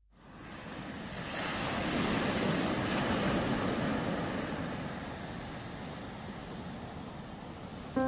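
A rush of ocean surf that swells in over the first two seconds and then slowly ebbs away.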